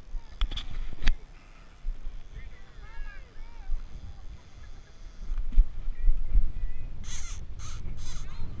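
A seabird giving a quick series of short, harsh arched calls a few seconds in, over a low wind rumble on the microphone. Near the end come a few brief rustling bursts of handling noise.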